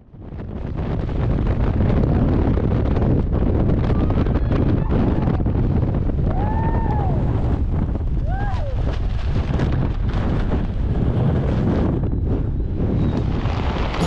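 Freefall wind rushing over a wrist-mounted camera's microphone, a loud steady roar that swells in over the first second. Two short voice cries, rising then falling in pitch, cut through it at about six and a half and eight and a half seconds.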